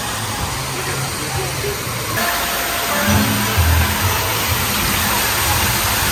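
Steady rush of water from a pool's rock waterfall, growing louder about two seconds in, with music playing underneath.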